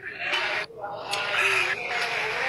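A woman laughing, heard through a phone video call, in two stretches with a short break between them.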